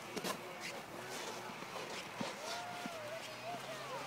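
Faint distant voices over quiet outdoor ambience, with a few soft clicks just after the start.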